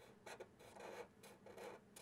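Faint scratching of a Sharpie marker's felt tip on paper: about four short strokes, roughly half a second apart, as a spiky zigzag line is drawn.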